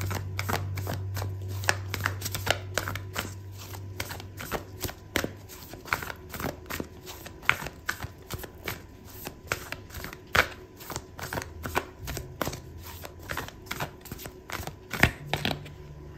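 Oracle card deck being shuffled by hand: an irregular run of quick card clicks and slaps, a few a second.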